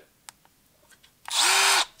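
Milwaukee M12 Fuel brushless quarter-inch hex impact driver given one short trigger pull, spinning with no load for about half a second a little past one second in, its motor winding up and back down.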